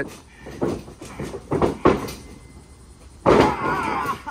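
Thuds and knocks of wrestlers' bodies and knees against a backyard wrestling ring's mat, several in the first two seconds. A louder, longer noisy sound follows near the end.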